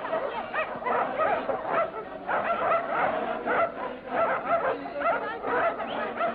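Several dogs barking and yelping together in quick, overlapping high calls, several a second.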